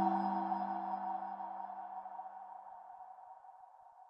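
Closing logo music sting: a struck, ringing chime-like tone dying away, with a lower held note beneath it that fades out about two to three seconds in.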